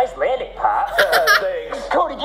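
A person laughing, in voiced bursts, with a breathy run of quick laughs about a second in.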